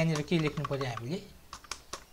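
A person speaks for about a second, then there are several computer keyboard key clicks near the end as code is typed.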